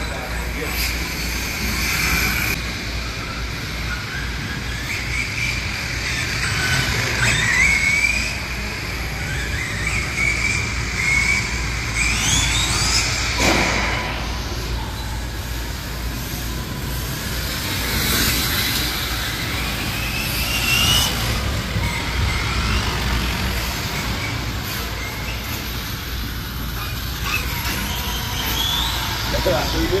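Electric RC car's motor whining, rising in pitch several times as the car accelerates.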